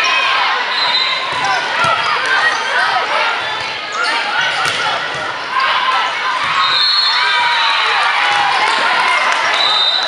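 Indoor volleyball rally in a large hall. The ball is struck sharply a few times and sneakers squeak on the court, under a steady din of players calling and spectators shouting.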